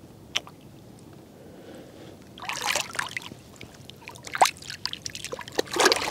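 Shallow lake water splashing and sloshing at the bank's edge as an angler's hands and landing net move in it, in several short bursts from about two and a half seconds in. A single sharp click comes just before them, near the start.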